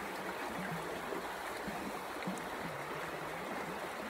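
Mountain creek flowing over rocks: a steady, even rush of water.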